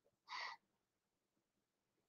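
Near silence, with one short breath from the man about a third of a second in.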